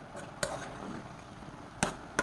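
A spoon clinking against a pot while stirring thick braised soybeans: two sharp knocks, about half a second in and again near the end.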